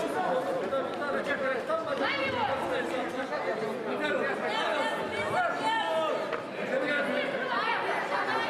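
Several voices talking and calling out over one another at once, in the reverberant space of a large sports hall.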